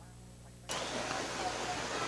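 A steady rushing background noise that cuts in abruptly about two-thirds of a second in, likely the race broadcast's audio channel opening just before the race call.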